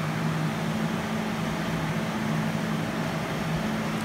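Steady low mechanical hum with an even hiss, unchanging throughout.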